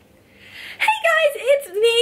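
A woman's voice in a high, drawn-out, sing-song exclamation, starting just under a second in after a quiet opening.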